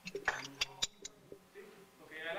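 Faint voices away from the microphone, with a few sharp clicks in the first second.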